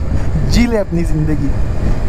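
Steady low rumble of wind and engine noise from a motorcycle on the move, with a man's voice heard briefly over it.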